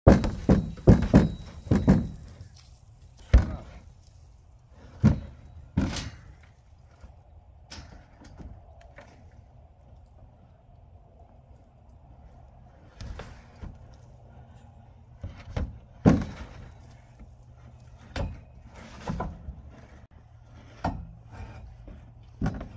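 Irregular thuds and knocks of a black feed trough in a steel tube frame, standing on end, being jostled by an ox whose horns are caught in it. A quick run of knocks comes in the first two seconds, then single knocks every few seconds.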